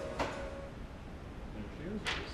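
A single sharp knock just after the start, as background music fades out, followed by a brief voice sound near the end.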